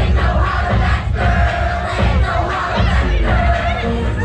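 A crowd of dancers shouting and singing along over loud dance music with a heavy bass beat played through the DJ's sound system.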